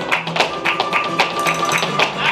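Live flamenco: acoustic flamenco guitar playing under sharp percussive strikes from the dancer's heel-and-toe footwork on the wooden stage and palmas hand claps, about four strikes a second.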